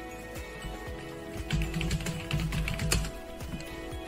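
Typing on a computer keyboard: a quick run of keystrokes in the middle, over steady background music.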